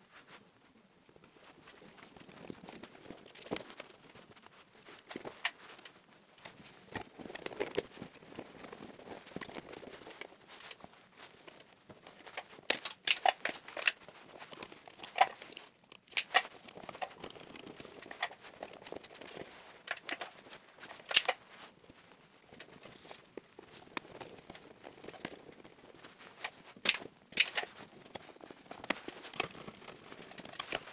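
Irregular small clicks, taps and rustles of stiff electrical cable being bent and fed into relay terminals in a distribution board, and of terminal screws being worked with a screwdriver. A few sharper clicks stand out in the second half.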